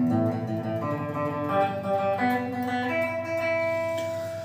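Electric guitar picked with a plectrum, single notes played one after another and ringing into each other. The last note is held from about three seconds in and slowly rings out.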